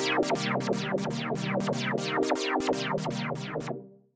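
Malström grain table synthesizer holding a chord while a Matrix pattern sequencer's gates retrigger its filter envelope. The result is a rhythmic pattern of quick, bright downward filter sweeps, about four a second, over the sustained chord. It stops shortly before the end.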